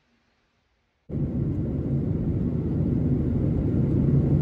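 About a second of silence, then the steady rumble of a passenger jet's cabin in flight, engine and airflow noise heard from inside the plane.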